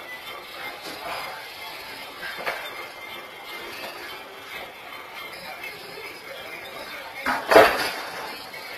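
Low room noise, then about seven seconds in a single loud bang and rattle: a locked glass shop door being shoved or struck.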